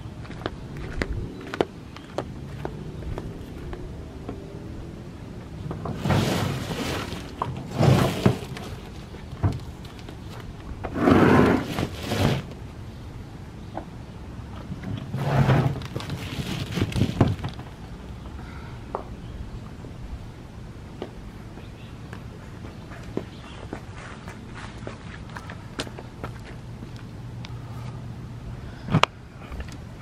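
Footsteps on concrete and the handling of a folding solar panel as it is lifted and shifted, heard as several short noisy bursts of about a second each with scattered clicks and thunks.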